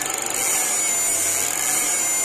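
Upgraded 9990W electrofishing inverter (fish shocker) running a load test on high-frequency tilapia mode: a steady rasping buzz with a high-pitched whine over it.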